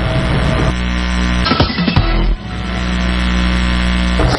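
Loud, steady electrical mains hum on the broadcast audio feed, a buzz with many overtones. It is briefly disturbed about a second and a half in, dips just past the middle, then comes back.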